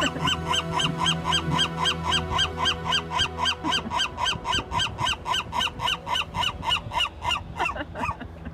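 Western gull giving its long call: a rapid run of yelping notes, about four a second, each rising and falling in pitch, kept up for nearly eight seconds and stopping just before the end.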